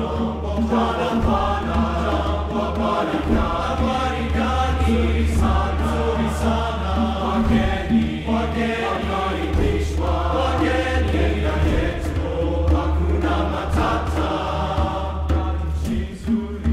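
Men's chorus singing full-voiced, accompanied by bongos played by hand.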